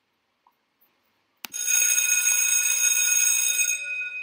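A ringing bell sound effect, like an alarm bell, starts sharply with a click about a second and a half in. It rings steadily for about two seconds, then dies away near the end. It marks the end of a pause for reflection.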